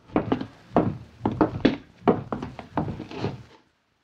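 Radio-drama sound effect of footsteps on a wooden floor: a string of hollow wooden thunks, about two a second, in a small room.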